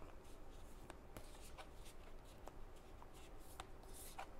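A deck of large oracle cards shuffled by hand: faint, irregular soft slides and light ticks of card against card.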